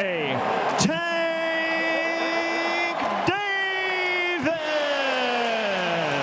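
A ring announcer's voice drawing out the winner's name in long held calls: a steady note held for about two seconds, a shorter one, then a long call that falls in pitch near the end.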